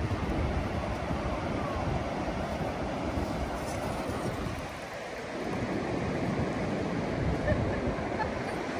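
Wind buffeting the microphone over the steady wash of surf breaking on the shore, easing briefly about five seconds in.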